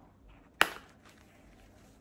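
A single sharp click about half a second in, with faint handling around it: the press-stud snap of a fabric sunglasses case being pulled open.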